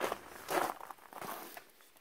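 A few crunching footsteps on gravel and dry dirt, spaced about half a second apart.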